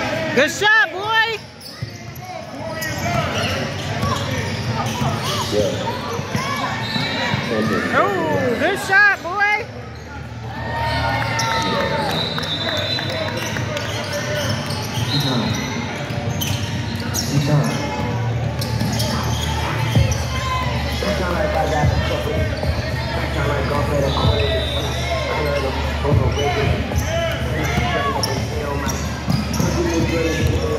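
Basketball game in a gym: a basketball bouncing on the hardwood court, sneakers squeaking, and players, coaches and spectators calling out, all echoing in the large hall.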